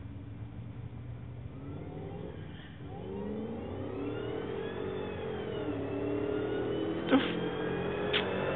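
Engines of a Camaro Z28 and a Ford Lightning pickup accelerating hard toward the listener, growing louder. Their pitch climbs and drops several times through gear changes. A brief sharp sound comes about seven seconds in.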